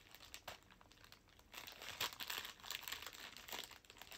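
Clear plastic packaging bag crinkling faintly as it is handled and opened. It is mostly quiet at first, and the rustling picks up about a second and a half in.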